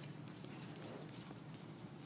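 Faint light taps and scratches of a stylus writing on a tablet screen, over a low steady room hum.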